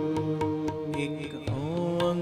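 Live shabad kirtan: held harmonium notes over steady tabla strokes, with a sung line sliding in near the end.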